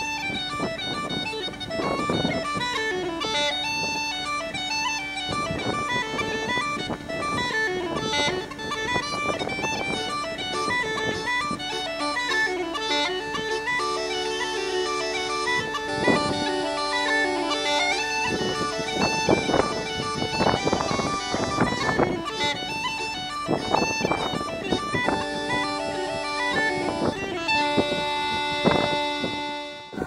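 Irish traditional tune played on uilleann pipes: a steady drone held under a quick, ornamented melody. The music fades out near the end.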